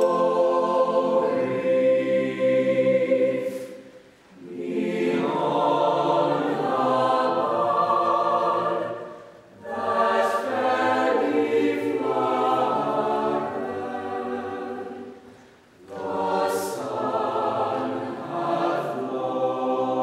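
Mixed choir singing a slow choral piece in long sustained phrases, with short breaks between phrases about every five to six seconds and brief hissing consonants.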